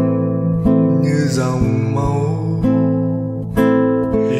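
Acoustic guitar accompaniment to a slow song: chords struck about once a second, each left to ring.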